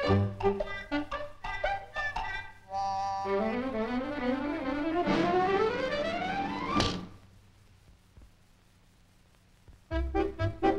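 Cartoon score with brass: short staccato notes, then a run of notes climbing steadily for about four seconds that ends in a sharp crash-like thud just before seven seconds in, a comic fall hit. Near silence follows.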